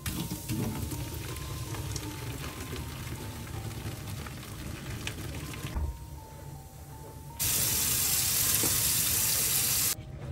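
Water pouring into a stainless-steel sink onto a foaming drain-cleaning mix of baking soda, citric acid, vinegar and dish soap. After a quieter moment, a tap runs hard and loud for the last two or three seconds, rinsing the sink.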